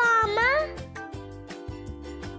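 Children's background music with a steady beat. During the first half second or so, a loud, high-pitched call with sliding pitch ends, and after it only the music remains.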